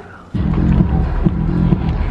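Music with a strong bass beat, cutting in suddenly about a third of a second in.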